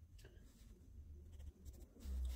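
Faint scratching of a pencil writing on the paper of a puzzle book, in a few short strokes, over a low rumble.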